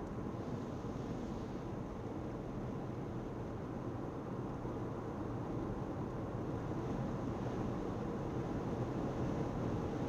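Steady road and engine noise of a car cruising, heard from inside the cabin.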